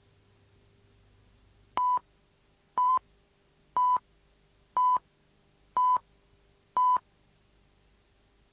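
Six short electronic beeps on one steady high tone, evenly spaced one a second, a telephone-like sound effect opening the song.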